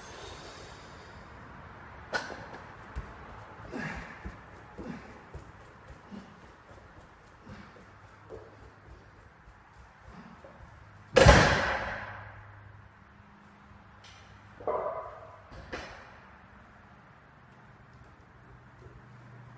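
Loaded farmers-walk handles, about 194 lb each, knocking and clanking as they are picked up and carried at speed. About eleven seconds in comes one loud, heavy metal crash with a ringing tail as the handles are set down hard on the rubber gym floor, followed by two smaller knocks a few seconds later.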